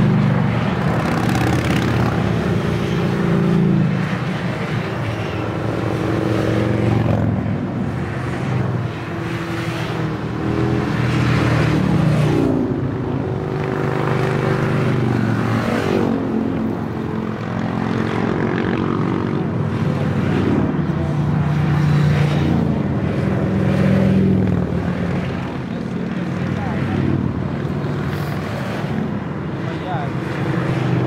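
Engines of a long procession of motorcycles passing one after another, a continuous drone whose pitch rises and falls as each bike goes by.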